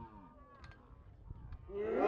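A drawn-out shout falling in pitch dies away, a few faint clacks follow, then several voices rise into loud shouting near the end.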